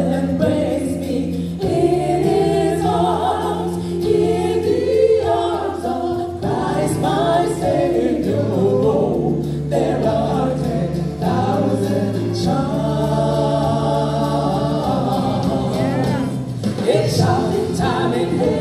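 Female gospel vocal group singing in harmony into microphones over a PA, with held low notes sustained beneath the voices.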